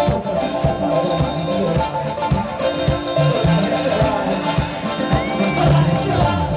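Live dance-punk band playing loud through a PA, with a steady drum beat under bass, keyboard and electric guitar.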